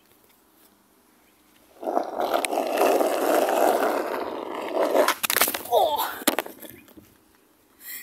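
Small plastic cruiser skateboard rolling over rough asphalt. The rolling starts about two seconds in and lasts about three seconds, followed by a few sharp knocks as it slows.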